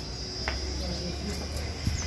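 Insects buzzing in a steady, high, unbroken drone, with a low rumble beneath.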